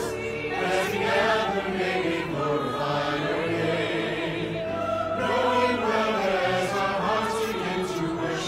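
A virtual choir of men's and women's voices singing together, mixed from separate home recordings.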